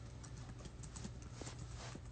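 Faint, irregular taps and clicks of fingers typing a text on a phone screen, a few taps a second, over a low steady hum.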